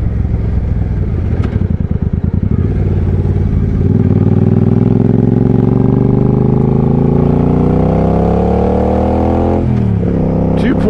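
Suzuki Boulevard C50T's 805 cc V-twin engine running low and uneven for the first few seconds, then accelerating, its pitch rising steadily for about six seconds before it drops suddenly at a gear change near the end.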